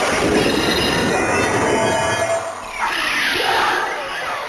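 Electronic attack sound effect from an Ultraman Trigger transformation toy, played just after its "claw impact" call: a loud, sustained rushing and grating noise that shifts in texture near the end.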